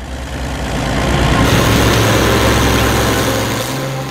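Engine of a heavy tracked self-propelled gun running, a steady low hum under a rushing noise that swells over the first second or so and eases off near the end.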